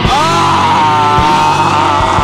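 Live hardcore punk band playing a slow, heavy passage: a distorted electric guitar bends up into a held, wavering note over bass and drum hits about once a second.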